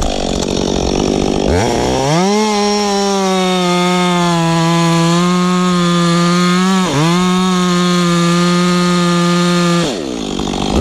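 Two-stroke chainsaw, newly built and still being broken in, bucking a Douglas fir log. It revs up into the cut about one and a half seconds in and holds a steady high speed under load, dips briefly about seven seconds in, and drops off at the very end.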